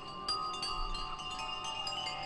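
Electric vibraphone notes struck in quick succession and left ringing, several bell-like tones sustaining and overlapping.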